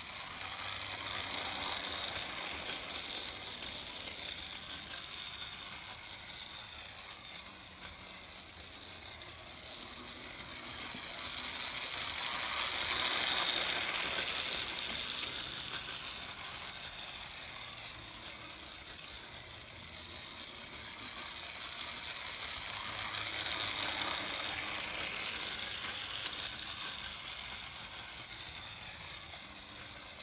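Small electric motor and gearing of a Playcraft 0-4-0 model locomotive whirring as it pulls its goods wagons around a circle of track. It grows louder and quieter in slow swells, loudest near the middle.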